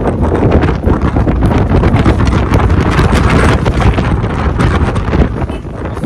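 Strong gusty wind buffeting the phone's microphone, loud and continuous with a low rumble.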